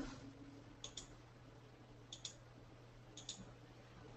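Faint computer mouse clicks: three of them about a second apart, each a quick press-and-release double tick, over near silence with a faint steady low hum.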